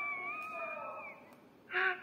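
A high, wavering wail, played back through a phone's small speaker, that trails off about a second in; a short louder burst of sound comes near the end.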